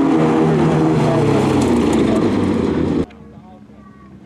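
Folk-race cars' engines running hard and revving as they slide through a gravel corner, loud and wavering in pitch. The sound cuts off abruptly about three seconds in, leaving only a faint background.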